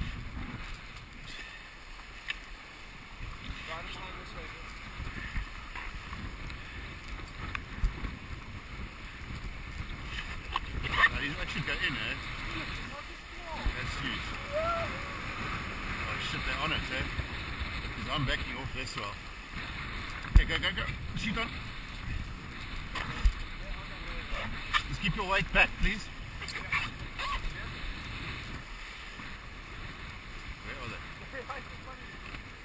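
Wind buffeting the microphone and water rushing and splashing around a Hobie sailing catamaran under way, with scattered sharp slaps and knocks, the loudest about twenty seconds in.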